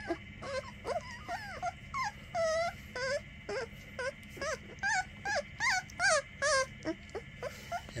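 Very young puppy whining, a string of short high-pitched cries, about two a second, loudest a little past the middle.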